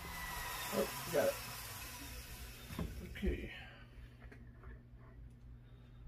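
Flexible-shaft rotary tool whining down, a high hiss with a slowly falling tone that fades out over the first three or four seconds. A few short vocal sounds and a steady low hum sit underneath.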